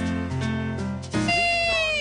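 A short jingle plays and cuts off about a second in, giving way to a long, high, drawn-out voice call whose pitch slowly falls.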